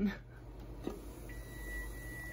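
A timer going off: a faint, steady high-pitched tone starts a little over a second in and holds. It signals that the six-minute boil of the sweet potatoes is done.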